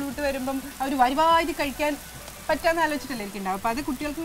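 A woman talking throughout, over the faint sizzle of chopped onions and tomatoes frying in a non-stick pan.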